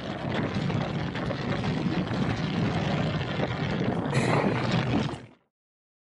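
Wind rushing over an action camera's microphone while riding a road bike, a steady noisy roar that grows hissier about four seconds in and cuts off suddenly a little after five seconds.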